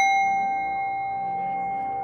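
A struck bell ringing out after a single strike: one clear tone with a higher, brighter overtone, slowly fading.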